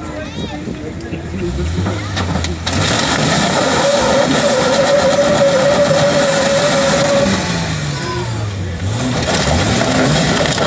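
Lifted Jeep's engine revving hard under load as it climbs onto a car, with a steady high whine in the loudest stretch; the revs drop off near the end, then climb again.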